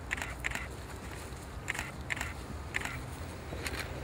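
Footsteps on grass: about six soft, short steps at irregular intervals over a faint steady outdoor background.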